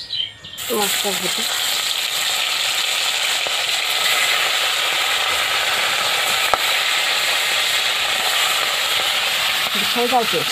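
Whole tilapia going into hot oil in an iron kadai, breaking into a loud, steady sizzle about half a second in as the fish fry. A single sharp knock sounds partway through.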